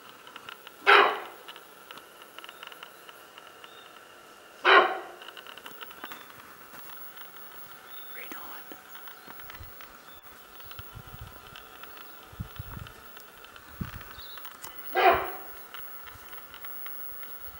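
Sika deer barking: three short, loud, sharp barks, the first two close together and the third after a long gap. The bark is the sika's alarm call.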